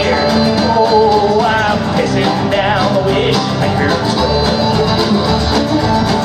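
Live country band playing an instrumental passage between sung lines: fiddle over strummed acoustic guitar, hand drum and upright bass, with a wavering melody line.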